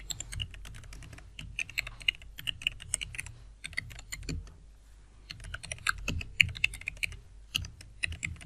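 Computer keyboard typing: rapid key clicks in two runs with a short pause near the middle, as a username and then a password are keyed in.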